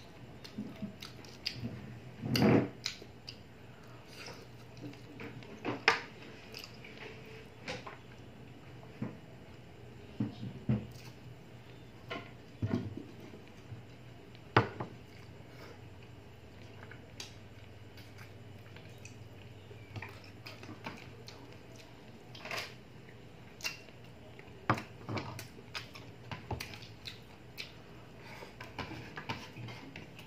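Close-up eating sounds from chicken feet adobo eaten by hand: irregular wet mouth smacks and clicks from chewing and sucking the feet, with the loudest sound about two and a half seconds in. Occasional light clinks of fingers and bones against a ceramic plate, over a faint steady low hum.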